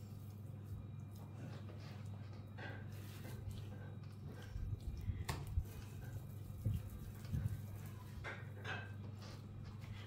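Hands rolling and patting wet minced-meat and soaked-bread mixture into meatballs: soft squishing with a few short slaps spread through, over a steady low hum.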